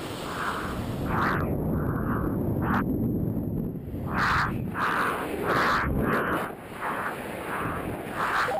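Rushing, rumbling air noise around a skydiver's pressure suit and helmet in supersonic free fall, with short hissing puffs repeating about every 0.7 s.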